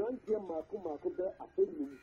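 Speech only: a man talking over a telephone line, the voice narrow and thin, in quick syllables with short pauses.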